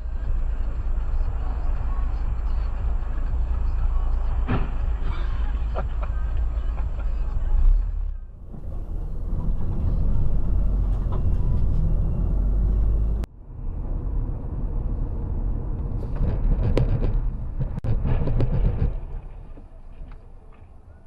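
Dashcam audio from inside moving vehicles: a steady low rumble of engine and road noise, changing abruptly about 8 and 13 seconds in as one recording gives way to the next. Several sharp knocks come near the end.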